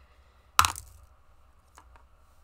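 A die being rolled for a dexterity saving throw: one sharp clack about half a second in that dies away quickly, followed by a couple of faint clicks.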